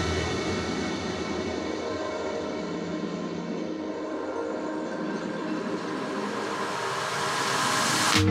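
Ambient electronic music at a changeover between tracks: a steady wash of hissing noise with faint held tones underneath, growing a little louder near the end.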